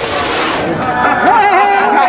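Several men talking and laughing over one another in a crowded room, with a rush of crowd noise dying away in the first half second.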